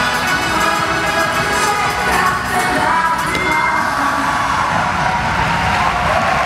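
Dance music playing and fading out, giving way to a crowd cheering and shouting in the second half.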